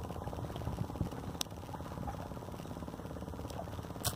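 Fishing boat engine running steadily with an even, rapid beat. A single sharp click comes about one and a half seconds in.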